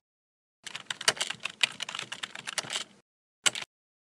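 Computer keyboard typing sound effect: a rapid run of keystrokes lasting about two seconds, followed by one more short burst near the end.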